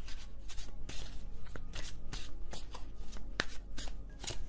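A tarot deck being shuffled by hand: a run of quick, irregular papery flicks and taps, with one sharper snap of a card a little over three seconds in.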